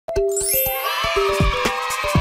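Short cheerful intro jingle of bright chiming notes over quick light taps, with a rising sparkly sweep in the first second.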